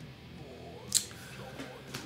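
Faint handling noise from an electric guitar, with one sharp click about a second in.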